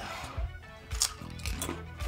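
Crunchy Doritos tortilla chips being bitten and chewed, several short crisp crunches, over quiet background music.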